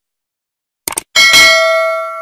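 Subscribe-button sound effect: a quick double mouse click about a second in, then a bright notification-bell ding that rings out and slowly fades.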